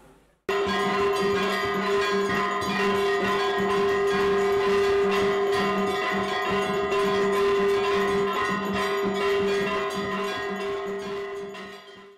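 Brass temple bells ringing continuously. Rapid, repeated strikes sit over a steady ringing tone. The sound starts suddenly about half a second in and fades away near the end.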